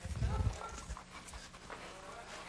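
Quick heavy footfalls on a platform, like a man running in place, carried as low thumps through a lapel microphone. They bunch in the first half second, with a couple of softer ones just after the middle, and faint voices underneath.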